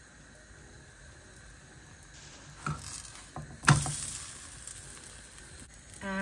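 Faint sizzling of a paratha cooking in a hot dry frying pan on a gas hob, growing a little from about two seconds in. About halfway through there is a light click and then a single sharp knock, the loudest sound, like metal on the pan or hob.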